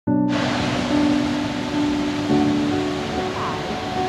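Steady rush of water from a mountain waterfall cascading down a rocky chute, mixed with calm background music of sustained notes.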